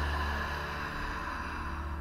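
A long, slow breath out, a soft rush of air that fades away near the end, over a low, steady music drone.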